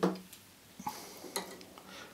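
A few faint, light clicks and handling noises of small metal fly-tying tools, scissors and thread bobbin, being put down and picked up at the vise.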